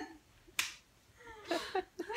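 A single sharp snap about half a second in, then faint brief vocal sounds.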